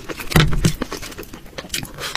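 Close-miked mukbang eating sounds: a heavy, wet bite into a dumpling about half a second in, followed by quick clicky chewing noises.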